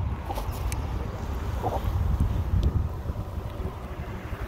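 Wind buffeting a phone's microphone outdoors, a steady, uneven low rumble.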